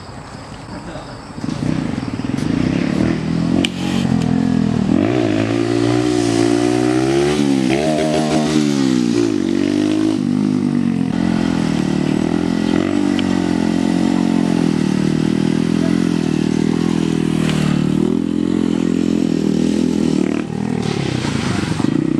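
Small single-cylinder minibike engine catching about a second and a half in, then running with a wavering idle and a few throttle blips between about four and nine seconds in, settling to a steadier run after that.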